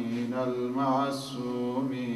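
A man's voice chanting an Arabic invocation in a slow, melodic recitation, holding and bending long notes.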